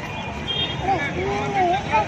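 Steady outdoor background noise with faint voices talking at a distance.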